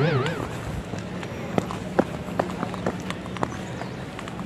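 A wavering, warbling tone fades out in the first half-second. It is followed by faint, irregular clicks and crackles over a low steady hum.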